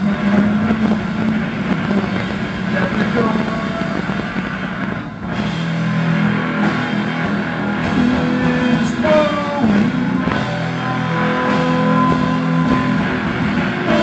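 Live rock band playing with electric guitar, keyboards and drums, holding sustained low chords, recorded from the audience; the music briefly drops about five seconds in.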